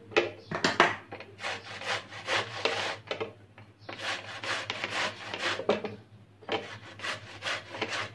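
A peeled bottle gourd being rubbed over the coarse side of a stainless steel box grater: repeated rasping strokes, several a second, with two short pauses.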